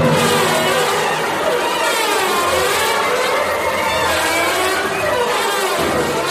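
Full symphony orchestra playing loudly: a dense mass of pitches sliding up and down over steady low notes.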